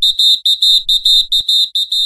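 Rapid electronic beeping: a single high tone pulsing about five times a second, steady in pitch.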